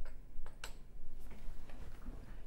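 Several light, sharp clicks at irregular intervals, small hard objects being handled.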